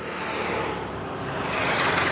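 A road vehicle passing close by, its noise growing louder toward the end.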